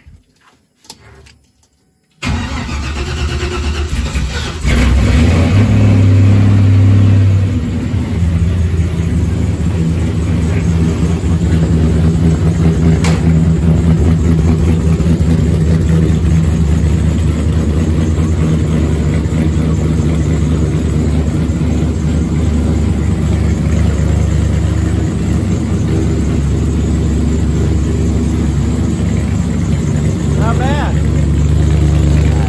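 Off-road race truck's engine started after sitting through the winter: it cranks for about two seconds, catches about five seconds in and runs at a fast idle, then settles about seven seconds in to a steady idle.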